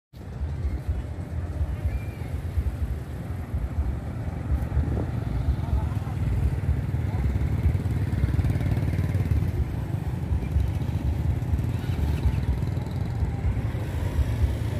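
Busy street sound of motorbike engines running and passing close by, under a steady low rumble, with people's voices in the background.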